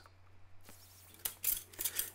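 A few short scrapes and clicks of steel flat bar being handled on a steel welding table, starting after a near-quiet first second.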